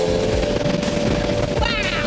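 The wFoil 18 Albatross hydrofoil speedboat under way at speed: its nose-mounted engine and forward-facing propeller running, with rough wind noise buffeting the microphone, under a music bed with a long held note.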